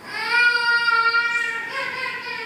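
A child's high voice singing out one long held note, then a shorter, different note near the end.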